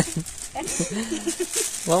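Thin plastic gift bags rustling as a child handles them, under soft, low voices.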